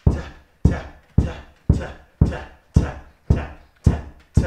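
A small ball bounced one-handed on carpet: a steady dull thud about twice a second, eight bounces.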